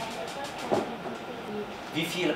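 Quiet room sound with faint, indistinct voices and one short thump about three-quarters of a second in.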